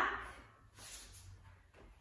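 Quiet small-room tone with a faint low hum, after a voice trails off in the first moment.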